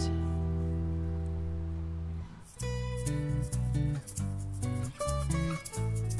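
Instrumental passage on acoustic guitars and bass guitar. A chord is left ringing and slowly fading. After a brief gap about two and a half seconds in, picked guitar notes begin over short plucked bass notes.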